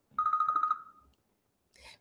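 A short electronic tone, one steady pitch with a rapid flutter, lasting just under a second and fading out.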